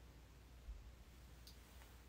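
Near silence: room tone with a faint low hum, broken by a small soft bump and, near the end, a faint short click.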